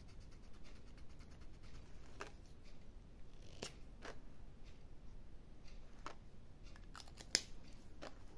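Faint scratching of a ballpoint pen writing on a paper budget sheet, with a few light ticks scattered through it, the sharpest near the end.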